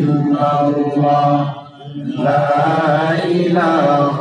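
A man's voice singing an Islamic devotional chant (zikr) in long, drawn-out melodic phrases, with a short breath break about one and a half seconds in.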